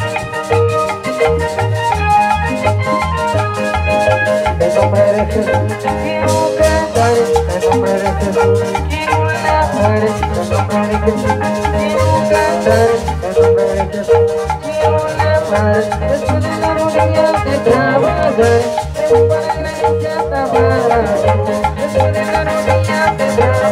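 A live band with an electronic keyboard plays upbeat instrumental music through loudspeakers. It has a steady bass beat and a busy, repeating melody.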